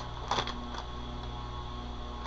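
Quiet room tone with a steady low electrical hum, and one faint brief sound about a third of a second in.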